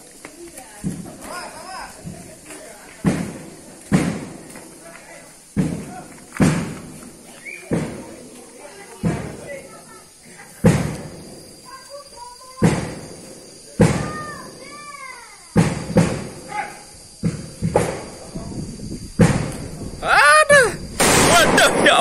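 Firecrackers going off: single sharp bangs roughly once a second. About two seconds before the end, the long hanging firecracker string breaks into a rapid, continuous crackle of bangs.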